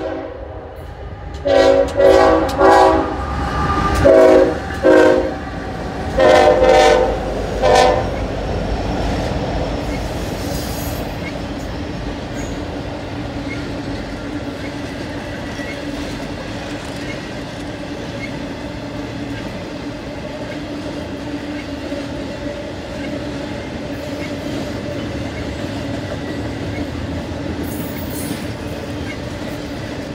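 Norfolk Southern freight locomotive's air horn sounding a rapid series of long and short blasts over the first eight seconds, followed by the steady rumble and rail clatter of the intermodal train's cars rolling past.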